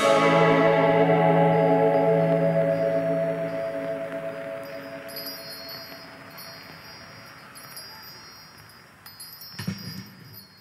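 The last chord of a synth-led dream-pop song rings out on keyboard, with bell-like sustained tones slowly fading over several seconds. A short burst of clicks and clatter comes just before the end.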